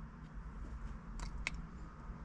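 Quiet room tone with a low steady hum and two faint clicks a little after a second in, from the tuning tablet being handled.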